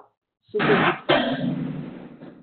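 A person coughing twice, the second cough longer and trailing off.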